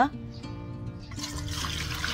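Soy sauce being poured from a ceramic bowl into a stainless steel bowl, the pouring starting about a second in. Soft background music plays underneath.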